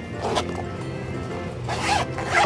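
Nylon zipper on a fabric pencil case being pulled along its track: a short zip about a third of a second in, then a longer, louder one near the end.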